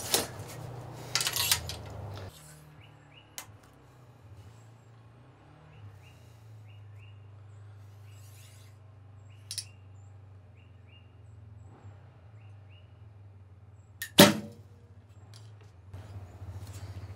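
A recurve bow shot about fourteen seconds in: the string's sharp snap on release, with a lighter click just before it. Before the shot it is quiet, apart from some rustling at the start as the bow is readied.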